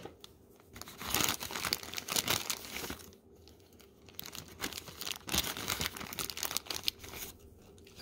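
Clear plastic zip bag crinkling in the hands as small electronic parts are fished out of it, in two spells of irregular crackle with a short lull in the middle.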